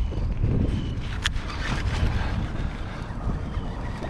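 Wind rumbling on the microphone over choppy water slapping against a plastic kayak hull, with one sharp tick about a second in.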